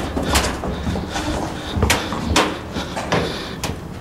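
Footsteps knocking on an aluminium bleacher walkway: a handful of irregular, sharp metallic knocks about a second apart.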